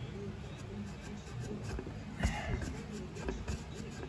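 Pry tool working at a stuck rear main seal cover on a Chevrolet 5.3 V8 block, with scattered small clicks and one sharp metal knock a little past halfway.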